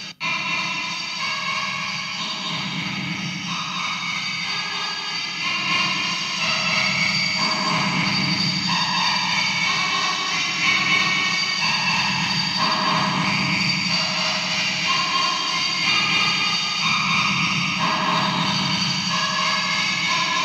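Casio CZ-230S synthesizer playing a bossa nova pattern, chords changing about every half second over a steady bass pulse. The signal runs through an Alesis Midiverb 4 effects preset.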